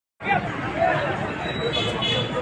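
Indistinct chatter of people's voices, starting abruptly just after the clip begins.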